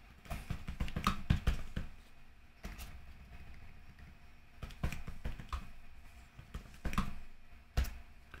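Typing on a computer keyboard: keystroke clicks in short irregular runs with brief pauses between them.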